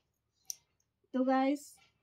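A single brief, sharp click about half a second in, in an otherwise quiet pause, followed by a woman speaking a short word.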